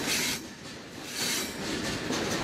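Freight train in motion, heard from on top of a freight car: the steady noise of steel wheels running on the rails, swelling briefly at the start and again about a second and a quarter in.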